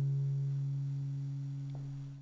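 Acoustic guitar's final chord ringing out, a few low notes fading slowly, with a faint tick near the end.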